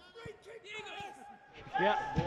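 Mostly speech: faint voices for the first second and a half, then a man says "yeah" near the end.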